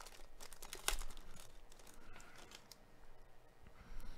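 Foil trading-card pack wrapper crinkling and tearing in gloved hands as the pack is opened: a faint, irregular run of crackles, loudest about a second in.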